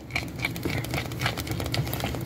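Silicone spatula stirring thick, simmering farina (cream of wheat) in a pot: a busy run of small irregular clicks and pops.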